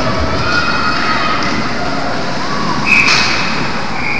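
Steady hubbub of an indoor ice rink during play. About three seconds in, a referee's whistle sounds once as a steady shrill tone for about a second, calling a stop in play that goes against the team with the puck.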